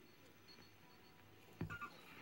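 Near silence with faint room hum. About one and a half seconds in, a vinyl record starts playing loudly over the speakers, opening with low drum thumps and a short pitched musical phrase.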